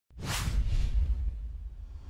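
Whoosh sound effect from an animated title graphic: it sweeps in suddenly right at the start and fades within about half a second over a deep bass rumble, which carries on and dies away more slowly.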